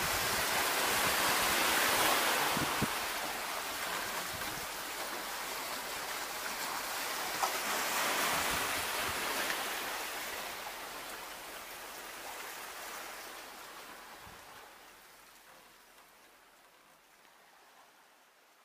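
Sea washing onto a rocky shore, a steady rushing that swells and ebbs and fades out over the last few seconds.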